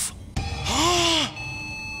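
A sudden dramatic sound-effect hit with a hiss, over which a boy gives one shocked cry that rises and then falls in pitch. It is followed by steady high electronic tones from laboratory machinery.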